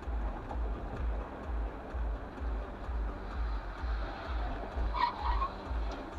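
Vehicle noise under background music with a steady bass beat, about two beats a second, and a brief high squeal about five seconds in.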